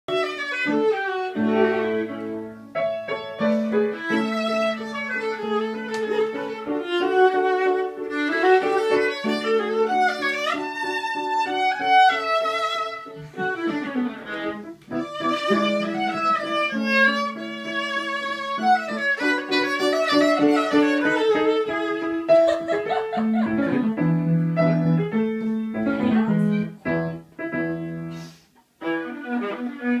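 Violin playing a slow melody of long held notes, with lower sustained notes underneath. The music dips briefly near the end.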